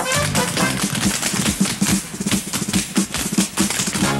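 Tap dancing: a troupe's rapid, clattering tap steps on a wooden stage floor, over a brassy show-band accompaniment.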